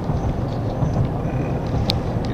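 A steady low rumble with a short sharp click near the end.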